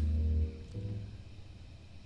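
Sustained low chords on a church organ or keyboard, dropping in level about half a second in and then held softly.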